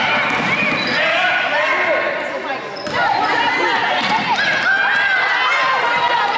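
A basketball being dribbled on a hardwood gym floor, repeated bounces heard under indistinct voices of players and spectators.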